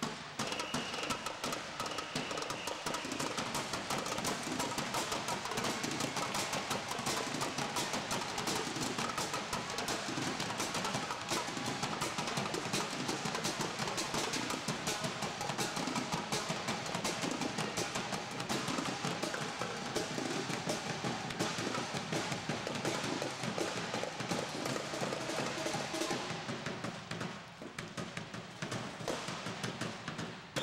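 Drill team drum line of snare and bass drums playing a fast, dense cadence, with a short lull near the end.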